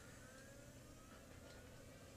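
Near silence: faint recording hiss after the narration ends.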